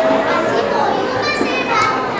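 Children's voices speaking and calling out, as in stage dialogue.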